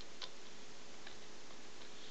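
A pause in speech: steady low background hiss with a few faint ticks.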